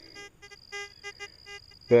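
Fisher F75 metal detector's electronic audio: a steady thin high-pitched whine with a quick, regular run of short, low beeps.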